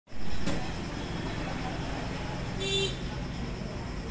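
Mahindra Scorpio's engine idling with a steady low rumble, with a sharp click about half a second in and a brief pitched sound just before three seconds.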